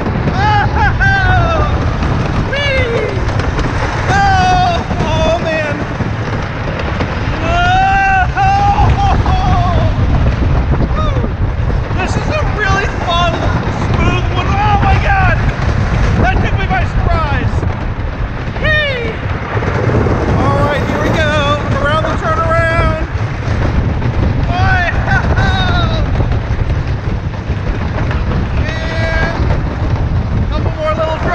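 Timberhawk wooden roller coaster train running over its wooden track with a steady low rumble, while riders whoop and scream again and again in short rising and falling cries.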